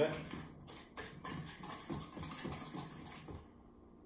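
Wire whisk stirring flour and sugar in a stainless steel bowl: a quick rhythmic run of scraping strokes, about three a second, with the wires ticking against the metal. The strokes stop shortly before the end.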